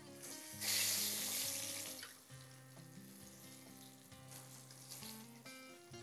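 Flour-coated zucchini slices going into a pan of hot oil: a sizzle starts about half a second in and dies down over the next couple of seconds. Quiet background music with held notes plays underneath.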